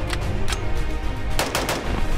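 AR-style rifle shots: a few single shots, then a quick string of about three near the end, heard over background music.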